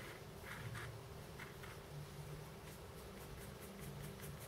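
Faint, soft scratching of a small flat brush rubbing dry weathering pigment powder into a plastic scale model, in short strokes, over a low room hum.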